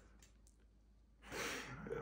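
Near silence, then about a second and a half in, a man sighs, a soft breath out.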